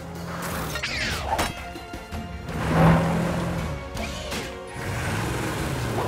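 Cartoon action sound effects over background music: whooshing sweeps and a crash-like impact, loudest about three seconds in.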